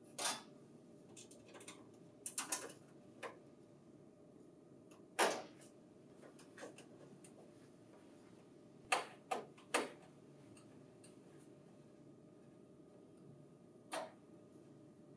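Scattered small metallic clicks and taps of a screwdriver and screws against a sheet-metal printer cover as the screws are driven in: a few separate ticks with pauses between, including a quick run of three about nine seconds in.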